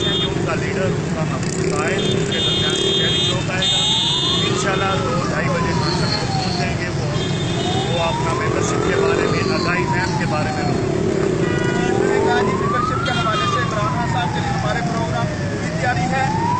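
A siren wailing, slowly rising and falling in pitch about once every four seconds, starting a few seconds in, over the steady din of street traffic.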